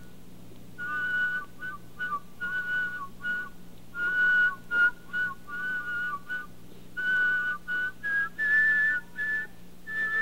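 A whistler whistles a melody in two notes at once (double-tone whistling), the two pitches moving together in parallel in short phrases with brief breaks. The pair climbs higher near the end.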